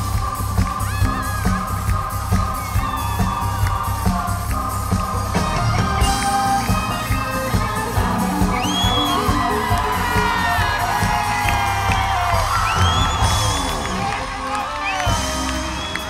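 Live pop band playing an instrumental concert intro: a heavy, pulsing bass and drum beat under held chords, with cheering and whoops from the crowd around the recording.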